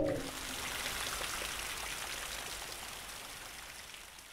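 Rain falling, a steady hiss of drops that fades out slowly.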